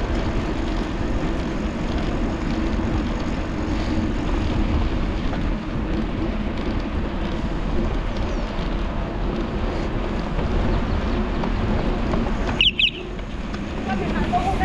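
Steady wind and road noise picked up by a handlebar-mounted action camera on a moving bicycle. A short high-pitched chirp sounds once near the end.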